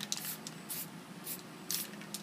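Aerosol spray paint can sprayed in four short bursts, about half a second apart.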